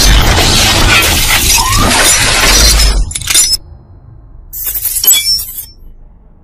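Glass-shattering sound effects over deep bass, loud and dense, cutting off suddenly about halfway through, followed by two shorter crashes.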